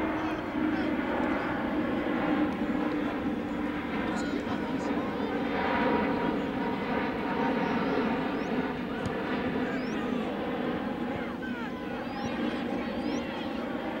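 Voices calling out across a rugby field over a steady engine drone.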